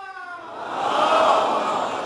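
A crowd of men chanting together in unison. The held chant dies away in the first half second, then a louder mass of crowd voices swells, loudest a little past a second in, and eases off toward the end.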